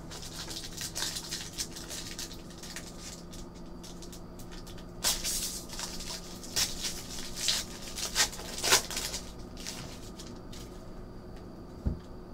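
A trading card pack being handled and opened: rustling and crinkling of the wrapper, with several brief sharp rustles between about five and nine seconds in, over a steady low hum.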